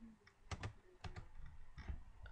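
Computer keyboard being typed on: a handful of quiet, separate keystrokes.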